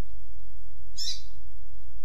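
Double-collared seedeater (coleiro) song-tutor recording: one short, high, falling note about halfway through, part of the 'tui tuipia' song, over a steady low hum.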